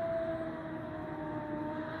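Civil-defence air-raid siren wailing: one long drawn-out tone that slides slowly down in pitch and then back up, with a fainter second tone above it.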